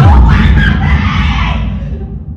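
A girl shrieking loudly, starting suddenly over a thump and heavy low rumble, then fading over about two seconds.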